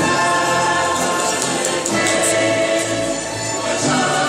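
A choir singing a slow piece of music in long held notes, in the manner of a national anthem played while the teams stand lined up.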